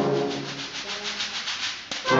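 Sand blocks, sandpaper-covered wooden blocks rubbed against each other in a quick, even rhythm of scratchy strokes, played alone as the brass band drops out. The strokes grow softer across the two seconds.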